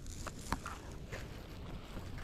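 Low wind rumble on the microphone, with a few faint clicks.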